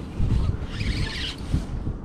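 Wind buffeting the microphone, making an uneven low rumble, with a brief hiss about a second in.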